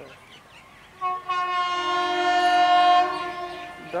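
Electric locomotive's horn sounding as the train approaches: a short toot about a second in runs straight into one long, steady blast that grows louder and stops shortly before the end.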